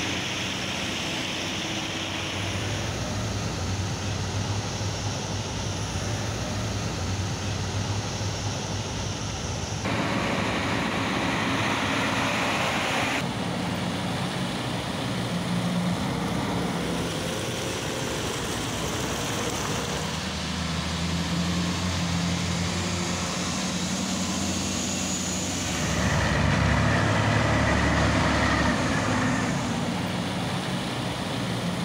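Heavy military vehicle engines running with a steady low hum. The sound changes abruptly several times as the shots change, and is loudest a few seconds before the end.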